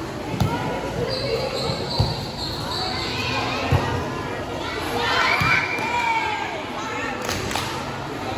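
Volleyball being struck during a rally in a large, echoing gym: three sharp thuds about a second and a half apart, over steady chatter from players and spectators, with a high-pitched shout about five seconds in.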